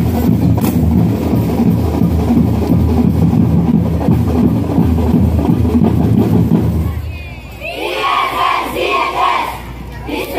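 Marching band playing loudly, with rapid drumming and sustained low tones. About seven seconds in the band drops out and many voices shout together in pulsing waves.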